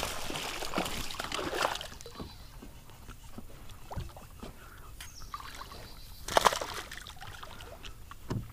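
A hooked bass thrashing and splashing at the water surface, settling into quieter sloshing as it is played toward the kayak, with another short splash near the end as it is landed.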